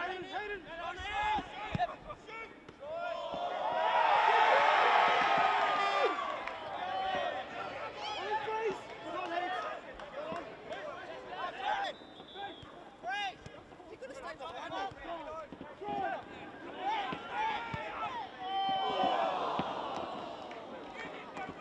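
Footballers shouting and calling to each other across the pitch, with occasional ball kicks. The shouting swells into overlapping voices about four seconds in and again near the end.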